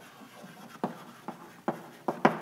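Chalk writing on a blackboard: soft scraping broken by three sharp taps as the chalk strikes the board.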